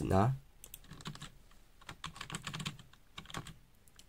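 Computer keyboard being typed on: a short run of irregular keystrokes lasting about three seconds, as a single short word is typed in.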